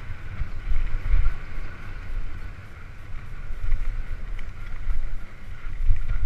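Wind buffeting the microphone of a helmet-mounted camera on a mountain bike riding a dirt forest trail, with uneven low rumbling surges as the bike runs over the rough ground.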